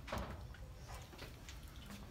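Quiet room noise with a low hum and a few soft knocks and rustles, the loudest a brief one right at the start: handling noise from the camera being carried.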